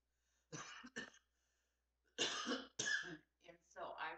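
A person coughing in short fits: two coughs about half a second in, then two louder ones a little after two seconds, with a little voice near the end.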